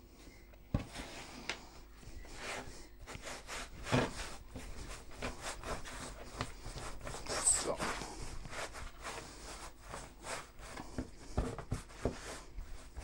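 Hands rolling yeast dough into strands on a floured wooden board: soft, repeated rubbing and brushing of palms and dough against the wood, with a few light thumps, the loudest about four seconds in.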